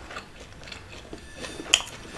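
A few soft clicks and taps from fingertips picking small pieces of taco filling off a wooden cutting board, with a slightly sharper click near the end.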